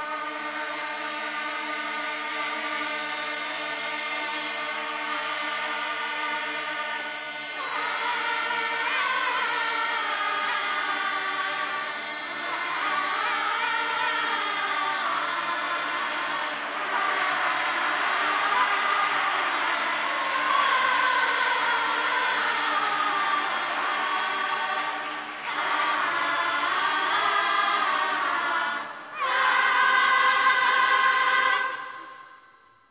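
Mixed youth choir singing a cappella: a sustained chord for about the first seven seconds, then moving, swelling vocal lines, broken by two short breaks in the last five seconds and loudest at the end.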